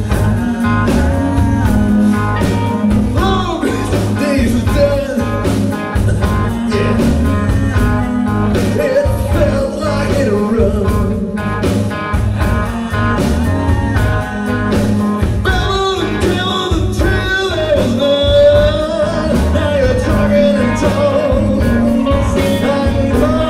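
Live southern rock band playing: electric guitars over a steady beat, with a male voice singing at times.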